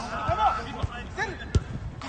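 Players shouting on a football pitch, with three or four dull thuds of the football being struck, the loudest about one and a half seconds in.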